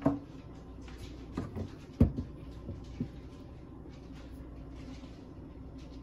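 A few scattered light knocks and clicks over a low steady hum, the sharpest about two seconds in.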